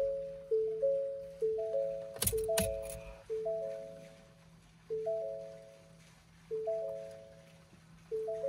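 Ford Bronco Sport dashboard warning chime, a two-note chime that repeats about once a second and slows to about every one and a half seconds, set off with the key in the ignition. Sharp clicks about two seconds in as the ignition key is turned.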